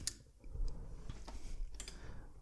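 Faint clicks and rustling while light switches are worked: a light tick about half a second in and a sharper click near the end.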